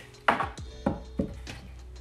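Plywood template knocking against wood as it is handled and turned over: about three sharp knocks in the first second and a half, the first the loudest.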